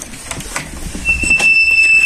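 A few knocks and clicks, then a door opening with a long, steady, high-pitched squeal from its hinges starting about a second in.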